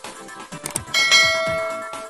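Outro music with a beat, then a bell chime sound effect about a second in that rings on and slowly fades.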